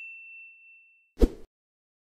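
A bright bell-like notification ding from a subscribe-button animation rings out and fades over about the first second. It is followed just after a second in by a short, low thump.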